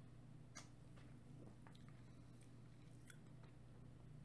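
Near silence: a low steady hum with a few faint, short clicks, the mouth and swallowing sounds of a man drinking from an aluminium energy-drink can.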